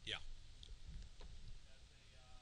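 A man's brief spoken "yeah" at the start, then a couple of faint clicks against low room noise.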